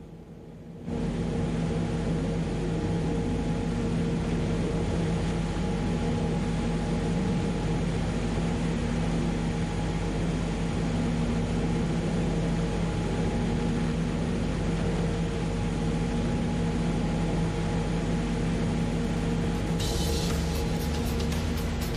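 A loud, steady whirring noise with a low hum in it, switching on abruptly about a second in.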